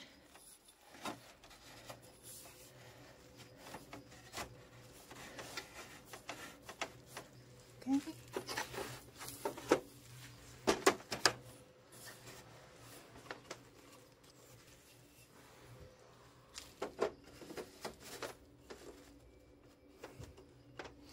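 Scattered clicks, knocks and rubbing of an aluminium folding picnic table's metal leg tubes being handled and fitted into its frame, loudest around the middle and again near the end.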